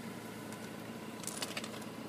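Faint steady background hum, with a few light clicks about a second and a half in.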